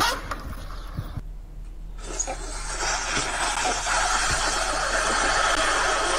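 A brief skateboard clatter on concrete in the first second, then, after a short pause, one long continuous slurp of a noodle that grows louder and lasts about five seconds.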